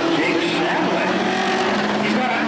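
Race car engines running steadily at speed as two cars race down the straight, with voices in the crowd.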